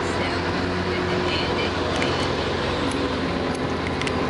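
Straight-piped diesel engine of a Volvo VNL770 semi truck running alongside with a steady low drone, heard from inside a car over road noise.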